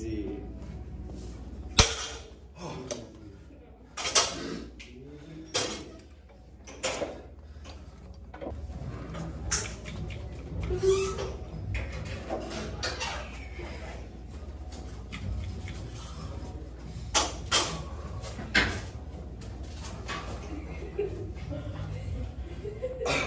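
A loaded deadlift barbell with black rubber plates set down on the gym floor with a loud clank about two seconds in, followed by scattered knocks and clanks over a steady low hum.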